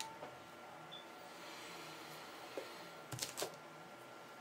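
Faint handling noises from hands wrapping tying thread at a fly-tying vise: a few light clicks, then a quick run of three sharper clicks about three seconds in, over a steady low room hum.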